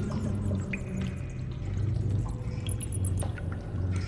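Edited-in cave ambience sound effect: a steady low rumble with a few faint drips.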